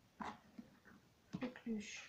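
A woman's voice speaking a few quiet words in French.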